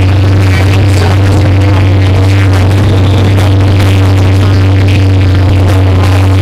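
Live heavy metal band holding one loud, unchanging low note on distorted amplified guitar and bass, heavily overloaded in the recording.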